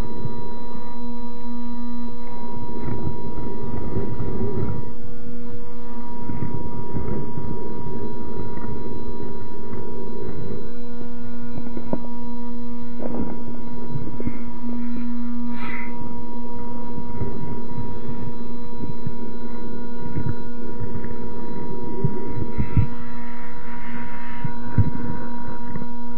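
Slowed-down, deepened audio of a GMade R1 RC rock crawler climbing rocks: a steady low hum with irregular low rumbles and knocks from the drivetrain and tyres on stone.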